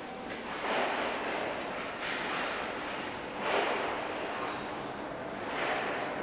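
Rushing whoosh from a Toei 6300-series subway train approaching through the tunnel. It swells and fades four times over a steady background hum.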